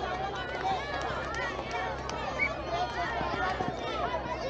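A crowd of children talking and calling out over one another, many overlapping voices with no single one standing out.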